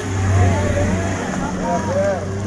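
Toyota Avanza's engine running low and steady as the MPV drives slowly past close by, loudest in the first second and then fading as it pulls away.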